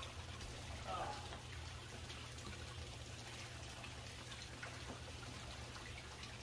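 Water trickling steadily from a pipe into a backyard fish tank, faint, over a low steady hum. A brief soft sound comes about a second in.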